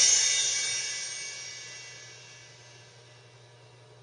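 A beat made in Reason 4 playing back through studio speakers stops, and its last held notes and cymbal wash ring out and fade over about three seconds, leaving a faint low hum.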